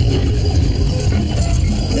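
Cartoon sound effect of a millstone turning and grinding: a steady, low grinding noise.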